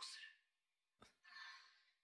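Near silence, broken by a faint click about a second in and a soft, breathy exhale just after it.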